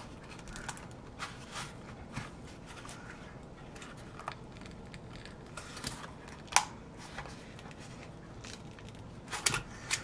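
Faint crackling and tearing as a rubber mold is peeled and worked off a cast pen blank, with a sharp click about six and a half seconds in and a few more near the end. The rubber is sticking to the casting because no mold release was used.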